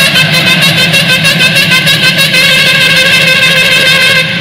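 Loud music with a steady, fast beat under long held notes.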